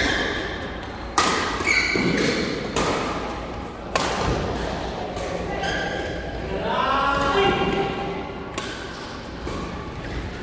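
Badminton rackets striking a shuttlecock during a doubles rally: four sharp hits spaced irregularly, a second or more apart, ringing in a large hall.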